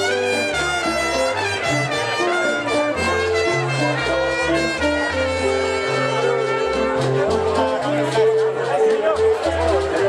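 Live salsa band playing: brass holds melodic lines over a stepping bass line and percussion. Crowd chatter runs underneath and grows more noticeable in the last few seconds.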